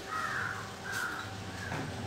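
A bird calling twice in quick succession within the first second or so, over a steady low background hum.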